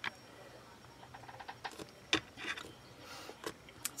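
Faint handling noises of fingers pressing and turning a block of polymer clay cane on a hard work surface: a few light ticks and soft rustles, spaced irregularly.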